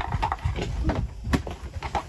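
Hard plastic covers being handled and pulled off a boat's cockpit instrument displays: a few light clicks and knocks, the clearest a little past the middle, over a low rumble.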